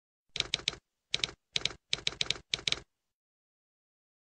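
Typewriter keystroke sound effect: about fourteen sharp key strikes in five quick groups of two to four, ending a little under three seconds in.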